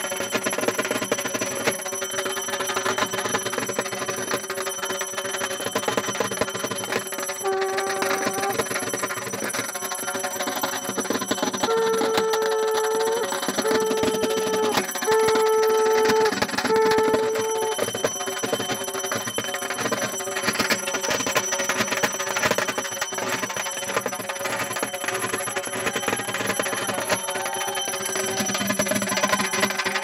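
Puja hand bell rung continuously in rapid strokes, with a steady high ringing over it. A few short held tones, each about a second long, sound in the middle.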